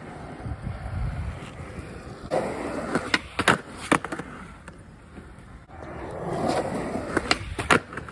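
Skateboard wheels rolling on concrete with a steady rumble. Twice, a little after three seconds in and again near the end, come clusters of sharp clacks from the board's tail and wheels striking the concrete: the pop and landing of a trick.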